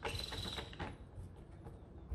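A deck of tarot cards being shuffled by hand: a quick run of card clicks for about the first second, then only faint handling.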